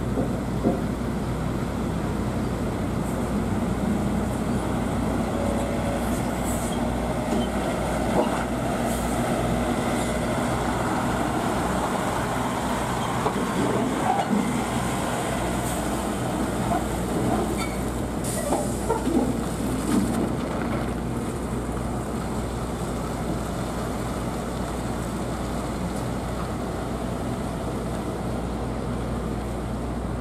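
Semi-trailer trucks driving past slowly: a steady diesel engine drone, with a run of clanks and rattles in the middle as a trailer passes close.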